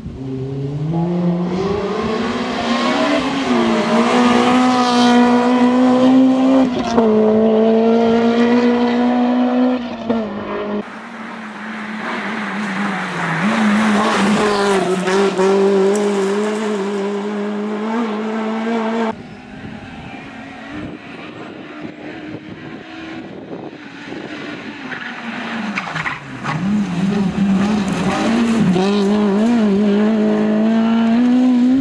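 Honda Civic Type R rally car's four-cylinder engine revving hard at high rpm as it accelerates over loose gravel, with brief dips in pitch at gear changes. The sound cuts abruptly twice, about a third and two thirds of the way through. It is quieter and farther off in the middle stretch, then loud again near the end.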